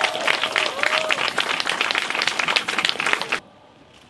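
A crowd applauding with dense clapping, cut off abruptly about three and a half seconds in.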